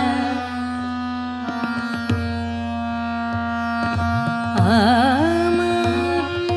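Hindustani classical female voice over a steady instrumental drone with light tabla strokes. The voice pauses after a held note, leaving the drone sounding alone for a few seconds. About four and a half seconds in, the voice returns with a wavering, ornamented phrase that settles onto a long held note.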